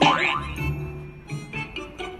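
Background music with an edited-in cartoon sound effect at the very start: a loud, quick upward-sweeping glide lasting about half a second.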